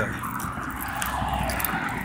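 Steady low rumble with an even hiss, a constant background noise with no distinct events.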